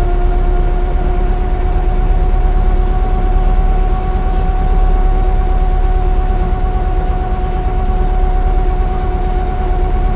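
1929 Leyland Lion bus driving along at a steady pace, heard from inside the saloon: a steady engine rumble with a steady whine above it that holds nearly the same pitch throughout.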